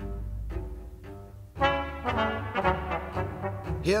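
Small chamber ensemble playing a march: short, detached trumpet and trombone chords over a steady low bass line, with a sudden louder chord about a second and a half in, followed by quick clipped notes.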